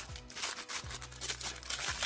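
Tissue paper wrapping crinkling in irregular rustles as a small doll accessory is unwrapped by hand, over soft background music.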